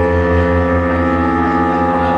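Live band playing: sustained synthesizer chords over a low bass note that pulses about four times a second.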